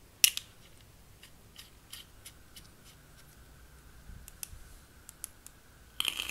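Small metallic clicks and scraping as a tank atomizer is screwed onto a Lost Vape Ursa Quest vape mod, with one sharp click just after the start and scattered faint ticks after it.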